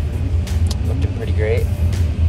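Steady low rumble of a car heard from inside the cabin, with a few faint voice fragments over it.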